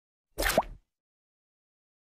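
A short cartoon pop sound effect with a quick upward pitch glide, under half a second long, about half a second in.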